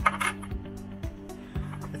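Background music, with a short clinking rattle near the start and a few light knocks as the torch's small plastic end cap with its metal ring is handled.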